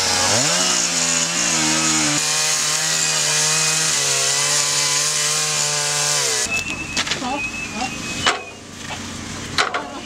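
Chainsaw revving up and running hard as it cuts into wooden gable boarding, steady for about six seconds before it cuts out. A few knocks and clatter follow.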